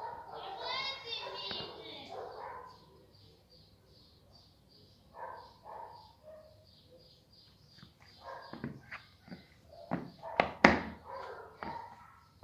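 Turf football shoes with rubber studs stepping and tapping on a tile floor, heard as a run of sharp knocks from about eight seconds in, loudest near the end. Earlier there are faint background voices.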